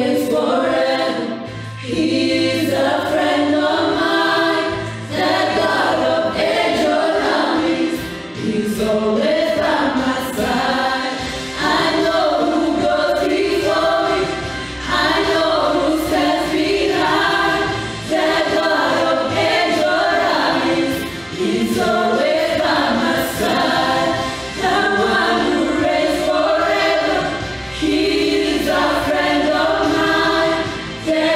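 A small gospel praise team of mixed women's and men's voices singing a worship song together into microphones, in sung phrases of about three seconds each with short breaths between.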